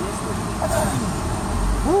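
Steady low rumble of a moving tuk-tuk, its engine and road noise heard from the open passenger cab, with faint voices over it and a short exclamation near the end.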